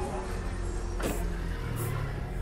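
Low steady vehicle rumble with a faint voice in the background, and a short sharp noise about a second in.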